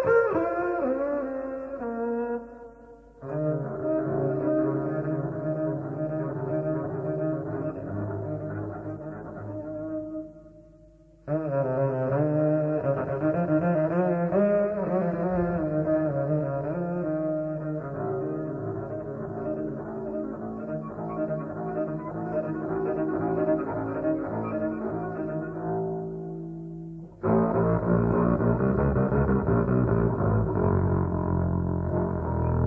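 Jazz trio music, double bass and piano, in slow held phrases that break off and start again about 3, 11 and 27 seconds in.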